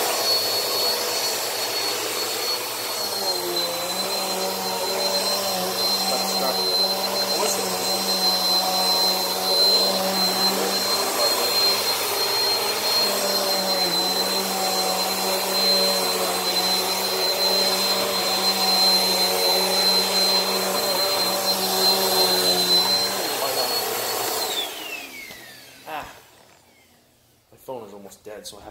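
Bissell PowerForce Helix upright vacuum cleaner running with a steady high motor whine while pushed over carpet. Near the end it is switched off and the whine falls away as the motor spins down, followed by a single click.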